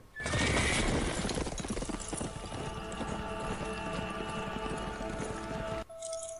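Film soundtrack: a horse neighing and its hooves clopping over a music score of long held tones; the sound cuts off suddenly just before the end.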